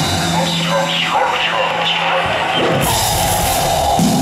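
Live rock band playing loud in a concert hall. The drums and guitars drop out for about two seconds, leaving one held low note under shouting voices, then the full band comes back in.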